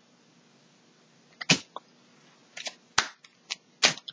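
Tarot cards being shuffled and handled: after a quiet moment, about six short, sharp snaps and taps of the cards, starting about a second and a half in.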